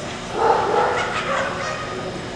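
A dog vocalizing once: a single pitched call that starts about a third of a second in and lasts about a second. It sits over the steady background noise of a large hall.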